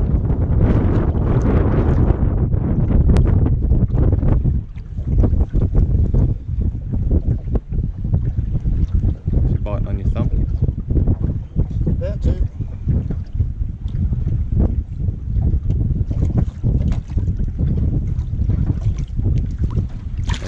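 Wind buffeting the microphone in gusts, heaviest for the first four seconds or so.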